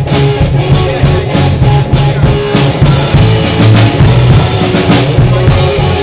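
Small rock band playing live and loud: drum kit hits in a steady rhythm under electric guitars and a bass guitar.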